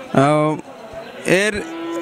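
A cow mooing, one short, steady-pitched call near the start.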